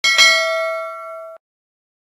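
A notification-bell chime sound effect: a bright bell struck twice in quick succession, ringing with several clear tones as it fades, then cut off abruptly after about a second and a half.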